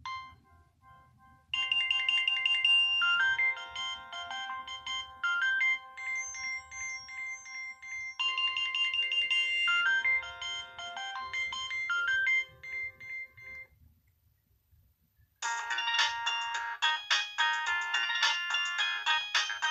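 Nokia 6030 polyphonic ringtones previewing through the phone's small speaker as the ringtone list is scrolled. A short blip comes first, then a melody of about twelve seconds that starts its phrase over once. After a pause of under two seconds, a different, denser tune begins.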